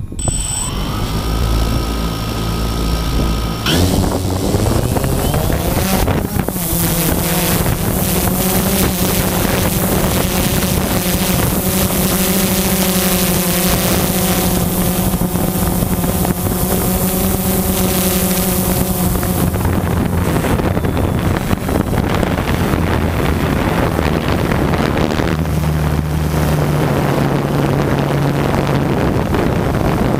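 Quadcopter drone's electric motors and propellers, heard from the drone's own camera: they spin up with a rising whine, climb sharply in pitch for lift-off about four seconds in, then hold a steady whine in flight. From about two-thirds of the way through, wind rushing over the microphone partly covers the motor sound.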